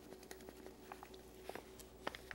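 Faint, scattered ticks and crackles from sausage grease in a hot skillet as flour is poured in to cook, over a low steady hum.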